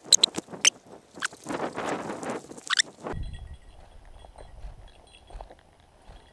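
Rustling movement through dry grass and brush, with a quick run of sharp clicks during the first three seconds; from about three seconds in only a faint, breezy background remains.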